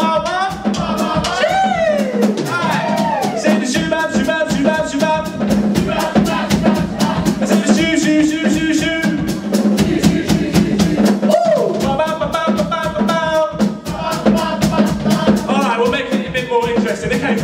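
Live acoustic guitar and drum kit playing a song with a steady beat, with a man singing over it.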